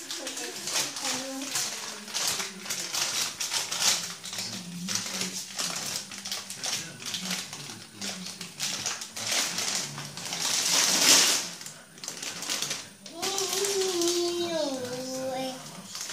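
Young children babbling and vocalizing without clear words, over a run of light clicks and rustles, with a louder rustling burst about ten seconds in. Near the end a child gives a drawn-out call that steps down in pitch.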